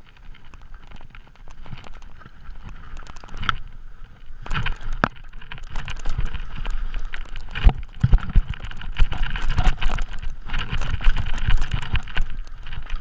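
Mountain bike riding downhill: tyres rolling with light rattles at first, then from about four and a half seconds in a louder, busier stretch of knocks, clatter and rumble as the bike runs fast over rough dirt trail.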